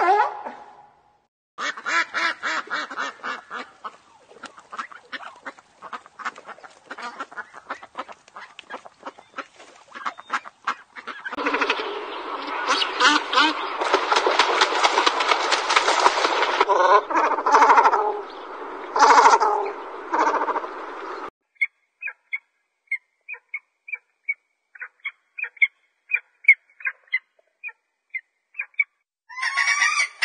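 A run of different bird calls, one clip after another. First a rapid clicking rattle, then about ten seconds of loud, harsh, dense calling, then a string of short high chirps.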